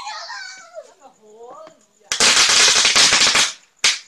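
A string of firecrackers going off in a dense, rapid crackle of pops for about a second and a half, followed by one more short burst just before the end.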